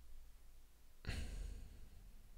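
A man's single audible breath into a close microphone, starting about halfway in and lasting most of a second.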